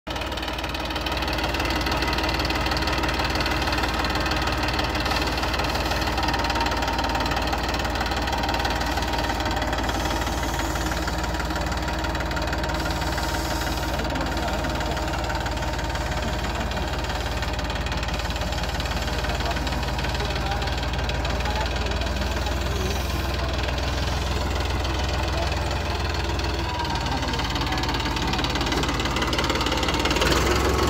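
Eicher 380 tractor's diesel engine running steadily as it pulls a tine cultivator through the field.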